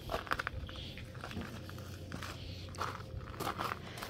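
Footsteps on gravel: a few irregular soft crunches, a cluster of them right at the start and more spread out after.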